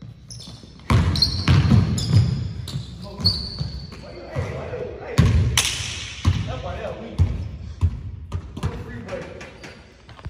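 Basketball dribbled and bouncing on a hardwood gym floor, a run of quick bounces with short high sneaker squeaks, echoing in the hall. About five seconds in comes a louder burst of thuds as the ball gets loose.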